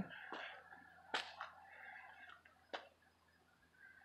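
Faint footsteps on a debris-strewn concrete floor: a few short sharp clicks, clearest about a second in and again near three seconds in.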